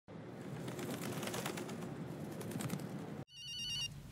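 A phone ringing with an electronic tone, a fast warbling trill of high beeps, that starts abruptly about three seconds in. Before it comes a steady hiss of background noise.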